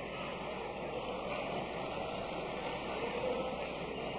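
A congregation's crowd noise: a steady wash of many voices reacting to the preacher's remark, with no single speaker standing out.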